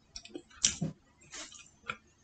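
A person chewing food with her mouth full: several short clicks and smacks, the largest a little past half a second in.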